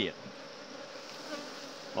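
Honeybees humming steadily around an open hive.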